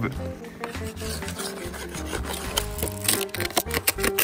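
Coif mini scraper rubbing and scraping ice off a snowboard's base and edges, with a run of quick scraping strokes near the end. Light background music runs underneath.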